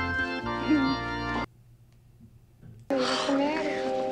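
Organ music playing held chords, which cut off about a second and a half in. After a little over a second of near silence the organ comes back near the end, with voices over it.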